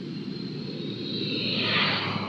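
Street traffic noise, a steady rush of passing vehicles that swells louder near the end as one comes closer.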